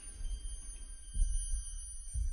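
Dark, low background score: a deep rumbling drone with a soft low pulse about a second in and again near the end, under faint steady high tones.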